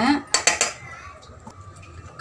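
A small stainless steel cup clinking against a stainless steel mixing bowl a few times in quick succession about half a second in, as gram flour is tipped out of it.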